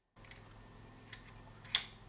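A hex screwdriver bit snapping into the magnetic bit holder of a Wera ratcheting screwdriver: a faint metallic click about a second in, then one sharp click near the end as the bit seats.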